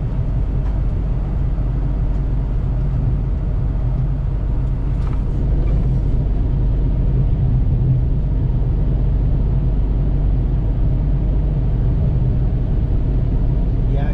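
Steady low drone of a truck's diesel engine and tyre noise, heard from inside the cab while cruising on the highway with the truck running empty. It gets slightly louder about six seconds in.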